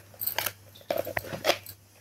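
Several short, light clicks and taps of kitchen utensils being handled, one with a brief metallic ring about a second in.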